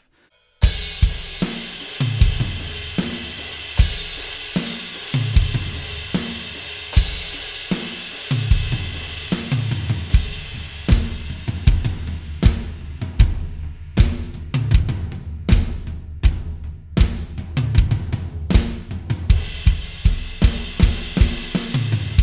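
Drum kit played as a steady groove with kick, snare and cymbal wash, starting about half a second in. Around halfway the pattern shifts to a bridge feel on the floor tom with the kick on every beat (four on the floor) to make it more powerful, and the cymbals come back fuller near the end.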